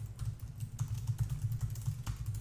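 Computer keyboard being typed on in quick, irregular keystrokes as a line of text is entered, over a low steady hum.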